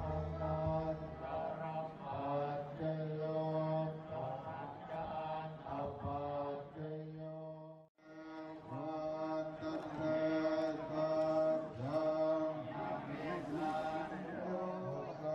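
Group of voices chanting a Buddhist chant in unison on long held notes over a steady low drone. It breaks off for a moment about eight seconds in, then resumes.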